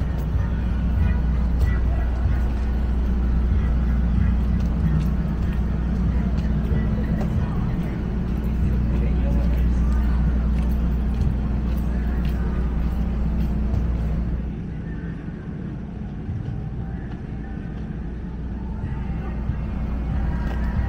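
City street ambience: a steady low rumble of road traffic with distant people's voices mixed in. The rumble drops noticeably about two-thirds of the way through and builds again near the end.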